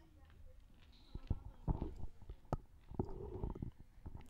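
Indistinct, muffled voices and a few knocks close to the microphone, with one sharp click about two and a half seconds in.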